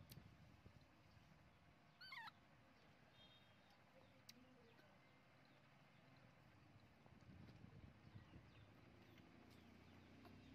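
Mostly near silence, broken about two seconds in by one brief, quavering high squeak from a newborn baby macaque feeding on a milk bottle.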